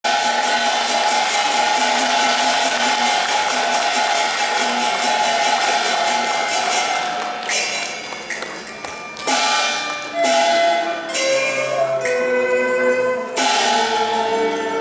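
Cantonese opera instrumental music: a fast, even percussion rhythm under a held melody, then from about halfway six separate sharp struck accents, each ringing on, between held notes that change pitch.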